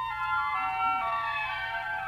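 Orchestra playing a high, bright passage of stepping melodic notes with almost no bass, from a 1957 broadcast transcription-disc recording, with a faint steady low hum underneath.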